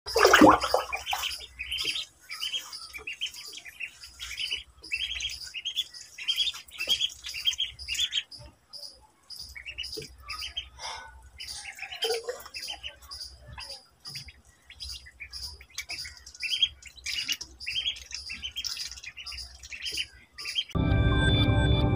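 Ducklings peeping: a steady run of short, high, falling chirps, about two a second, with brief pauses. A loud falling cry opens the first second.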